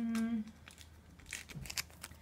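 A brief hummed vocal sound, then a few sharp crinkles and rips of a small plastic bag being torn open, bunched together about a second and a half in.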